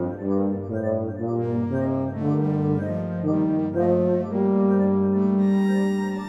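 Solo tuba playing a lyrical line of short notes over a prerecorded electronic accompaniment, then settling on a long held note about four seconds in.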